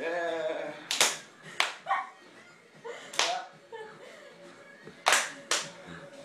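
Sharp hand smacks, five at uneven spacing, with a voice calling out at the start and short vocal sounds between them.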